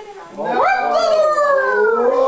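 A dog howling: one long howl that rises sharply about half a second in, then slowly falls in pitch.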